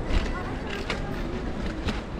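Bicycles rolling over cobblestones and tram rails: a steady low rumble of wind and road noise, with a few sharp knocks and rattles.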